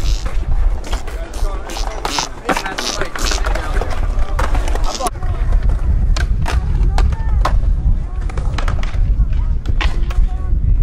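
Skateboard wheels rolling on a concrete skatepark surface, a steady low rumble that is strongest from about halfway in, with sharp clacks of the board hitting the ground.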